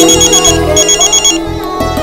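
Mobile phone ringtone: a fast-warbling electronic trill in two half-second bursts, the phone ringing for an incoming call, over background music.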